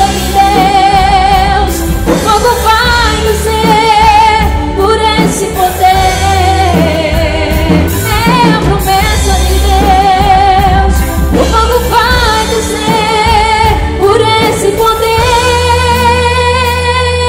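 Live gospel music: a woman sings long held notes with heavy vibrato into a microphone, over electronic keyboard accompaniment and a steady low bass.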